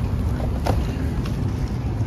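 Wind rumbling on the microphone over the steady noise of street traffic.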